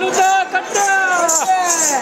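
A man's voice calling out in long cries that fall in pitch, with a jingling rattle sounding in short bursts.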